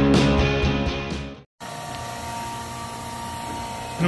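Rock guitar music fades out and cuts to a moment of silence. Then an electric diesel fuel transfer pump runs with a steady hum and a thin whine.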